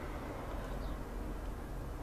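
Steady low background hum and hiss of room noise, with a faint short high chirp about a second in.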